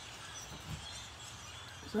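Faint chirps of distant birds calling, over a quiet outdoor background.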